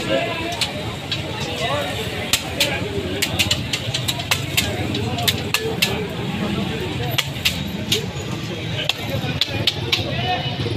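Cooking on an oiled flat steel griddle: frequent sharp, irregular clicks and scrapes from a spatula working the hot metal, over a steady low background rumble.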